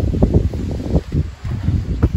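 Wind buffeting the microphone: an uneven low rumble that dips briefly a little past the middle.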